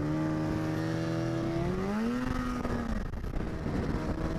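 Polaris SKS 700 snowmobile's two-stroke twin engine running along a trail, its pitch rising about one and a half seconds in as the throttle opens and falling back about a second later.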